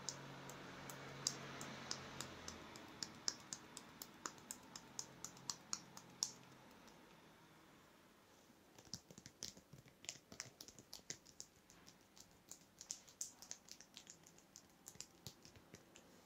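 Fingertips working over a man's skin and hair during a head massage, close to a wrist-worn microphone: faint, irregular sharp clicks and crackles in two runs with a short lull about halfway.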